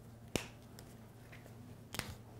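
Two sharp clicks about one and a half seconds apart, the first louder: a dry-erase marker's cap snapping off and on as markers are swapped, over a low room hum.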